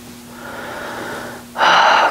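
A woman breathing during a neck stretch: a soft, drawn-out breath in, then a loud breath out starting about one and a half seconds in as she brings her head forward.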